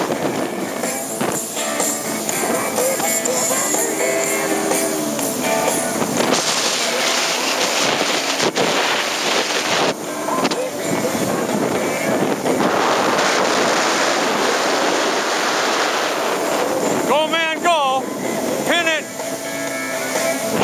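Personal watercraft running at speed through shallow water: engine and jet mixed with rushing spray and wind buffeting the microphone. A voice calls out, its pitch rising and falling, near the end.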